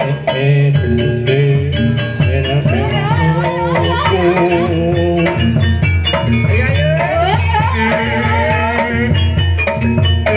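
Banyumasan gamelan music for an ebeg horse dance: kendang hand drums beat a steady pattern under bonang kettle gongs and a metallophone. From about three seconds in, a voice sings a gliding, ornamented melody over the ensemble.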